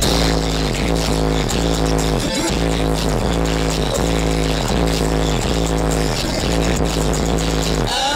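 Electronic dance music with a heavy, steady deep bass and a falling bass sweep repeating about every three-quarters of a second, played loud through a car's subwoofer system.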